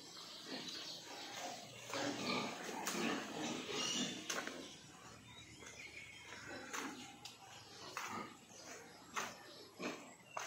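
Pigs grunting in their pens, a string of irregular grunts that is strongest over the first few seconds and then quieter, with a few light knocks in the second half.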